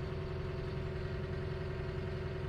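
Diesel engine of a John Deere 444K wheel loader idling steadily, heard from the cab, with a constant hum over the low engine pulse.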